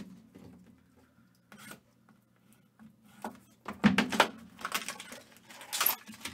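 Trading-card packaging being handled: a few faint taps at first, then from about four seconds in a run of rustling and crinkling as a box and its foil wrapper are moved and opened, loudest near the end.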